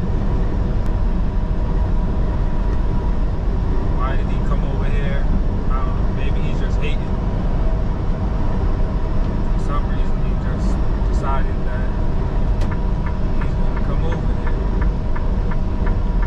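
Steady low rumble of engine and road noise inside a semi truck's cab at highway speed.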